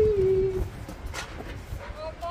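A man's singing voice holding one long note, which ends about half a second in. It is followed by a low wind rumble on the microphone.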